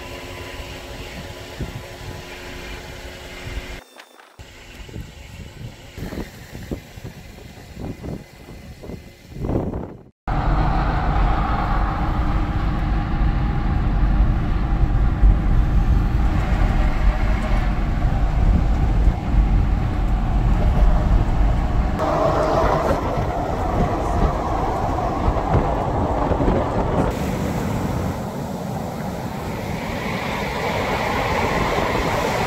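Jeep Wrangler driving on a road, heard from inside the cabin: loud, steady road and wind noise over a deep rumble. It starts suddenly about ten seconds in, after a quieter stretch of steady hum and scattered clicks.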